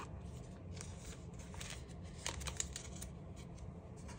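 Faint rustling and light, scattered ticks of a photocard being slid into a clear plastic binder sleeve pocket and the plastic sleeve pages being handled.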